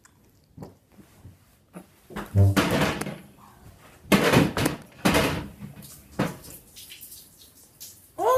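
A person's loud breathy exhales and hisses through clenched teeth in four or five bursts, one with a short groan, as a reaction to intensely sour candy. A few small knocks come just before the first burst.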